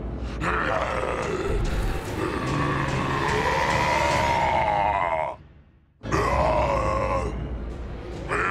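A cartoon monster's voiced roar: one long, wavering roar lasting about five seconds that cuts off suddenly, then after a brief near-silent gap a second, shorter roar.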